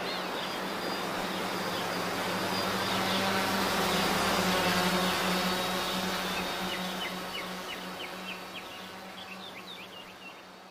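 Small quadcopter drone's propellers buzzing steadily, growing louder towards the middle and then fading away, with birds chirping near the end.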